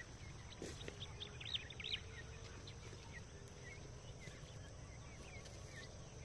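Birds calling in a series of short high chirps, busiest and loudest from about one to two seconds in, over a faint steady low background noise.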